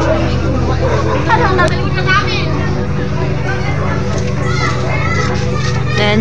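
Several people talking and calling out, children's voices among them, over a steady low hum.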